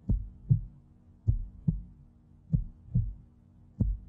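Slow, low double thumps in a heartbeat rhythm, one pair about every 1.25 seconds, over a faint steady hum.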